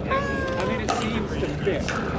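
A person's voice held in one long, slightly falling call, with the steady hubbub of a busy outdoor court complex. Two sharp pops of pickleball paddle hits come about a second apart.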